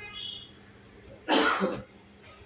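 A person coughs once, a sharp, loud burst about a second and a quarter in that lasts about half a second.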